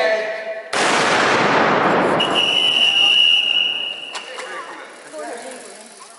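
A starting shot fired to send off a cycle tour: a sudden loud bang followed by about three seconds of dense noise that slowly fades. A steady high whistle tone comes in about two seconds in.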